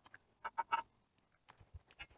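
A few short plastic clicks and rattles as hands work bungee balls and pixel light strips onto the tree's base hoop, clustered about half a second in, with fainter ticks after.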